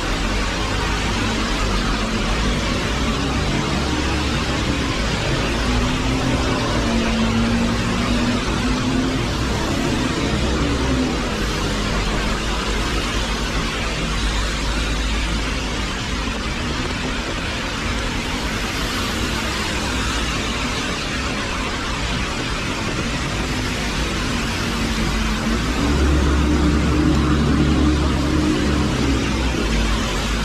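Steady rain with traffic going by on a wet road: a constant hiss of rain and tyres, with passing vehicles adding engine hum that swells about a third of the way in and grows louder again near the end.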